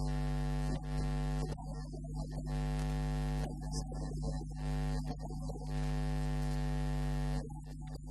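Steady electrical mains hum, a buzz with a long run of even overtones, with less steady sounds breaking in briefly several times.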